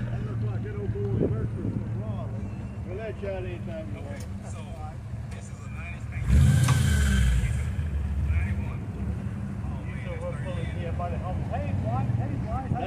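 A classic car engine idling with a steady low rumble. About six seconds in comes a sudden louder burst lasting a second or so, likely a blip of the throttle.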